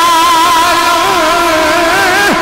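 A man's voice holding one long sung note through a microphone, with small wavers in pitch: melodic chanting in the drawn-out style of a sung sermon.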